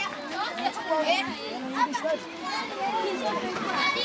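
A crowd of schoolchildren chattering close by, many voices overlapping at once; one voice says "hivi hapa" in Swahili about two seconds in.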